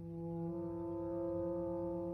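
Chamber orchestra holding a sustained chord, led by brass, that swells out of a quiet passage; another note joins about half a second in.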